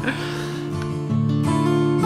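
Background music: acoustic guitar strumming held chords, the chord changing about a second in.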